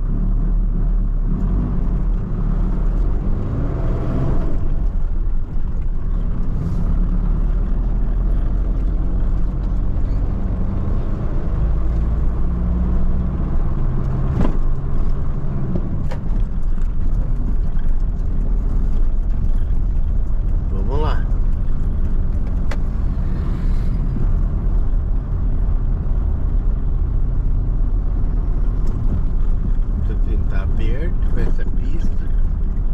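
Mercedes-Benz Sprinter van's diesel engine and road noise while driving, heard from inside the cab, the engine note shifting up and down now and then with speed and gear changes.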